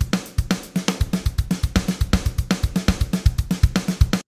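Software drum kit beat played back through Logic Pro's Note Repeater MIDI effect, each hit repeated three times at dotted-eighth-note spacing. The result is a busy, rapid pattern of kick, snare and hi-hat hits.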